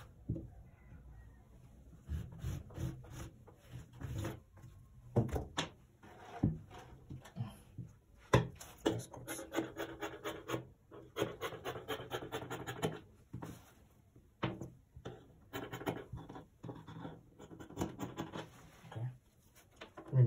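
Shirt fabric being marked along a straightedge and cut with scissors on a wooden table: runs of quick scratchy strokes, broken by a few sharp knocks as tools touch the table.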